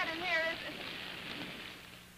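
Steady rain falling, fading away near the end. A brief voice sounds over it at the start.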